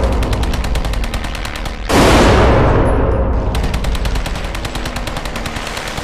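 Rapid machine-gun fire, about ten rounds a second, in long bursts, with a sudden loud blast about two seconds in over the wartime air-raid imagery.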